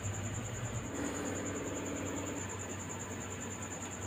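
Milk and rice simmering in a nonstick pan while being stirred with a wooden spatula: a soft, steady hiss with no distinct knocks.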